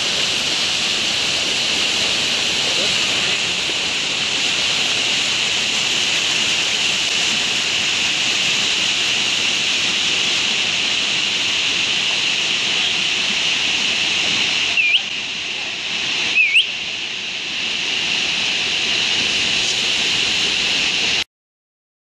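Creek water rushing steadily down rock cascades into churning pools, an even hiss. Two short rising whistles sound about a second and a half apart, two-thirds of the way through.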